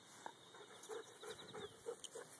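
A Goldendoodle panting softly in quick, even breaths about three a second, winded from playing fetch.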